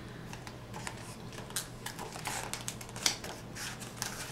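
Faint, irregular small clicks and paper rustles from hands handling a hardcover picture book.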